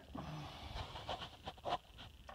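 Faint handling noises of a tubular steel exhaust manifold being turned over in the hands: a few soft knocks and rustles, with a breath.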